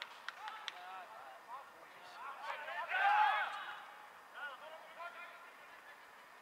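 Distant voices shouting across a football pitch, loudest about three seconds in, with a few sharp knocks in the first second.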